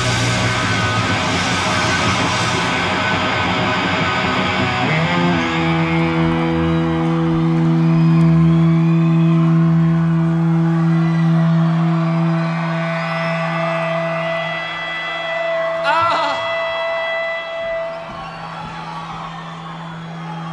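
A live punk rock band plays the final bars of a song, which ends about five seconds in. A single electric guitar note then rings on steadily through the amplifier over a cheering crowd, with a yell near sixteen seconds.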